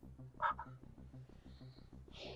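Faint frog chorus: a low, rapid, steady pulsing croak, with one short higher-pitched sound about half a second in.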